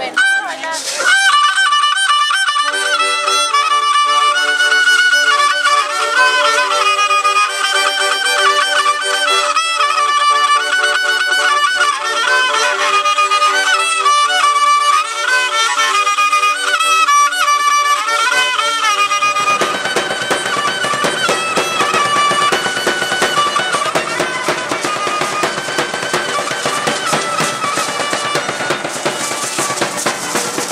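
Violin and accordion playing a lively son: the violin carries the melody over held accordion chords. About two-thirds of the way in, the sound turns denser and noisier, with a rattling, beating texture underneath the tune.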